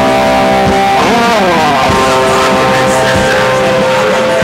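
Live punk rock band playing loudly: distorted electric guitars hold chords over drums. About a second in, a guitar note slides down in pitch.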